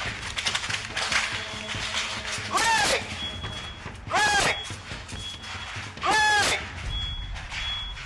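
A house fire crackling and popping, with three loud, short shouts from a person about two and a half, four and six seconds in.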